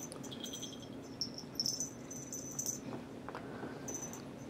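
Small bell inside a pink toy mouse on a string jingling faintly, on and off, as the toy is jerked about, loudest around the middle.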